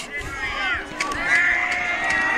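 Distant shouting and chanting from a baseball team's bench: short swooping yells, then a long drawn-out call from about a second in.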